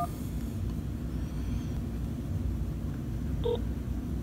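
iPhone call on speakerphone connecting: a steady low rumble with a short beep about three and a half seconds in.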